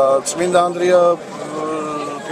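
Speech: a person talking, with no other clear sound.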